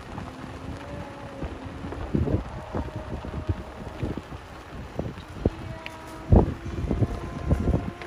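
Wind buffeting the microphone while riding in a slowly moving golf cart, with low rumbling and knocks from the ride over a dirt road. There is a single loud thump a little after six seconds, and faint steady tones come and go.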